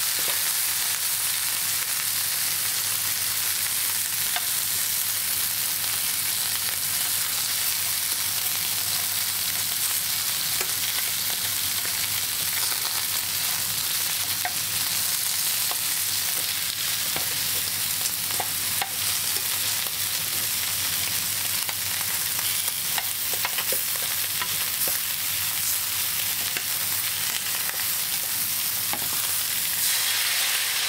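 Meat-wrapped carrot and komatsuna rolls frying in hot fat in a pan, a steady sizzle throughout, with a few faint ticks.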